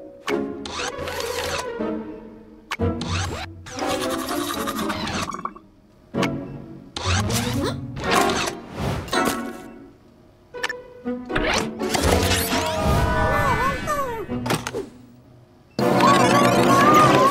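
Cartoon background music broken up by short sound effects, with gliding tones near the end.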